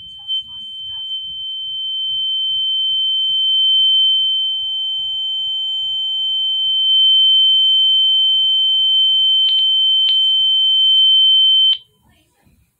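A steady, high-pitched electronic tone with a fainter lower tone beneath it, slowly growing louder, then cutting off suddenly just before the end. A few short clicks sound over it in the last few seconds.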